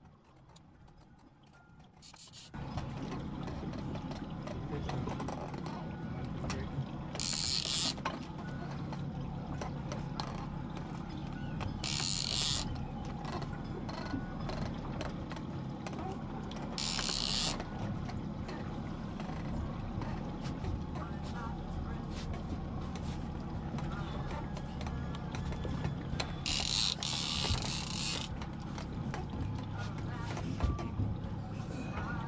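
A big-game fishing reel buzzes in four short bursts of about a second each, under load from a hooked yellowfin tuna. A steady low drone of outboard engines running at idle comes in about two and a half seconds in.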